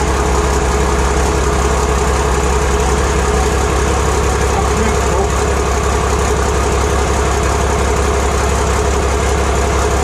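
Six-cylinder IVECO turbo diesel idling steadily and loudly just after its first start, with no exhaust system fitted, heard inside the enclosed steel hull of the tank.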